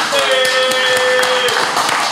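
Several people clapping their hands in a loud burst of reaction, with a long, steady high-pitched note held for about a second and a half over the claps.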